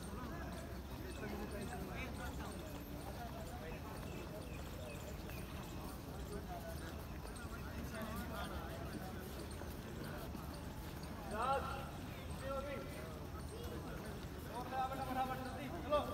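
Chatter of many people around an athletics track, heard from a distance over a steady low rumble, with a nearer voice calling out briefly about eleven seconds in and again near the end.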